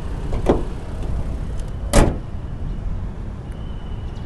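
A steady low rumble, with a short knock about half a second in and a louder single thump about two seconds in.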